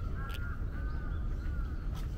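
Crows cawing in a few calls in the first part, with a short sharp sound at the first call, over a steady low rumble.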